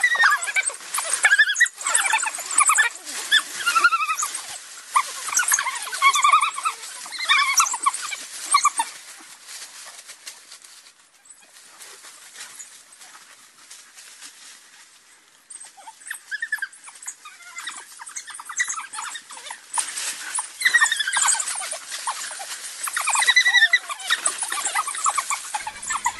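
African wild dogs giving rapid, high-pitched twittering calls in dense bursts, fading to a quieter lull about halfway through before picking up again.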